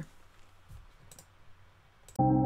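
Quiet room tone with a few faint clicks, about a second in.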